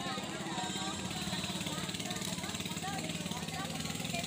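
Crowd chatter, many people talking at once, over the steady low hum of an engine running.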